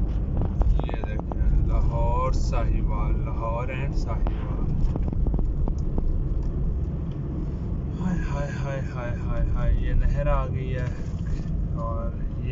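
Steady low rumble of a car's engine and tyres on the road, heard from inside the cabin while driving. Voices come in over it twice, talking or singing.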